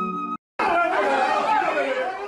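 Music with long held notes cuts off abruptly, and after a brief gap several people are talking loudly over each other in a room.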